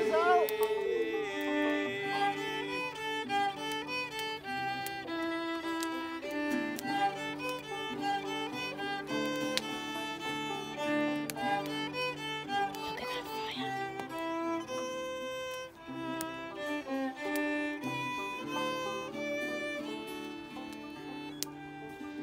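Fiddle playing an instrumental tune of quick, short notes over sustained lower notes, after group singing dies away about a second in.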